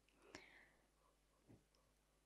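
Near silence: room tone between spoken prayer lines, with one faint brief click about a third of a second in.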